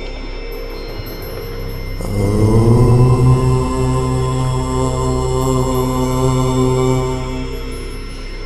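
One long Om chanted in a low voice over a steady background drone. The chant enters about two seconds in with a slight rise in pitch, holds on one note, and fades out near the end.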